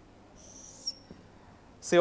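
Marker pen squeaking across a whiteboard in one short, high-pitched stroke of about half a second as a line is drawn.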